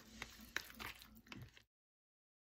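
A metal spoon stirring oatmeal and yogurt in a plastic food container: soft wet scraping with a few faint clicks of the spoon against the plastic. The sound cuts off to dead silence about a second and a half in.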